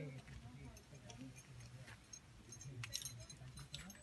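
Faint, distant voices talking, with a few light clicks and clinks, mostly in the second half.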